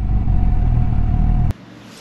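Kawasaki Z800 inline-four motorcycle running at low speed, heard from the rider's seat as a steady rumble with a faint whine. It stops abruptly about a second and a half in, leaving a quiet background.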